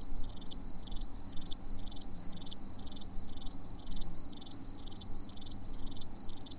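Cricket-chirping sound effect: a steady run of short, high chirps on one pitch, a few a second, the stock 'crickets' gag marking an awkward silence.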